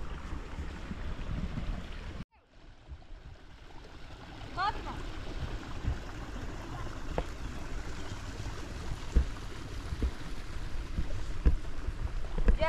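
Outdoor ambience of running water and wind on the microphone. It cuts out sharply about two seconds in and comes back, with a brief high call near five seconds and a few soft knocks later on.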